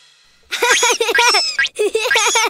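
High-pitched cartoon baby voice giggling: a quick run of repeated laughs starting about half a second in, a brief break, then another run.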